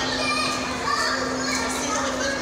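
Young girls' voices, indistinct chatter and giggles, over a steady low hum.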